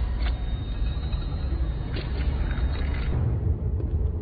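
Film sound design: a deep, steady rumbling drone with a few brief crackles during the first three seconds.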